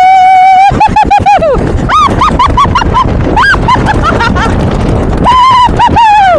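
People whooping, laughing and yelping as they slide down a tubing hill on snow tubes: a long held "woo" at the start, then quick bursts of laughter and short yelps, and another long whoop near the end that falls in pitch.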